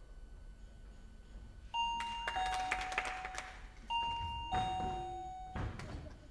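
A two-tone doorbell chime, high note then low note (ding-dong), sounding twice, about two seconds apart, with a few light knocks around it.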